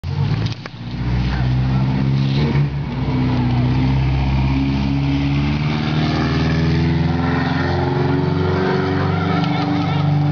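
A car engine running close by, a low, steady drone, over the fizzing hiss of hand-held sparklers, with a few voices.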